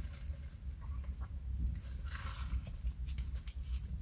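Soft mouth sounds of sipping a bubble drink through a straw and chewing its popping boba, with a few faint clicks and a low steady rumble inside the car.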